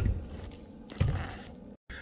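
Two knocks about a second apart from shoes landing on the rungs of a motorhome's metal ladder as someone climbs it.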